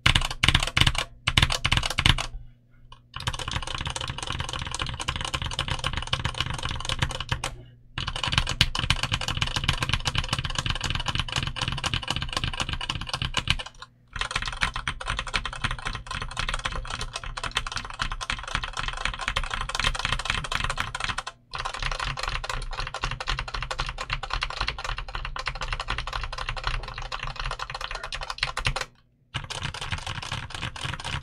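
Redragon Yama K550 full-size mechanical keyboard with Redragon Purple tactile switches, an aluminum plate and ABS OEM keycaps, typed on. A few separate heavy keystrokes come first, then fast continuous typing in runs of several seconds broken by brief pauses.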